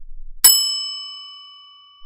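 A single bell-like ding struck once about half a second in, its ringing tones dying away over the next second and a half: a quiz timer's time-up chime sound effect, marking the end of the countdown.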